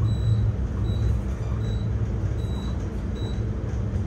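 Ride noise inside the cab of a 700 ft/min traction elevator (an Otis Elevonic 401 modernized by KONE) travelling fast downward: a steady low rumble.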